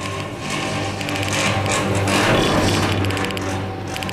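Chairlift ride: a rush of wind noise swells and fades through the middle, over a steady low hum.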